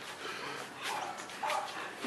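Long-billed corella giving two short calls, about a second in and half a second apart.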